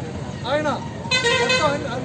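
A man speaking in Telugu, with a vehicle horn honking briefly about a second in.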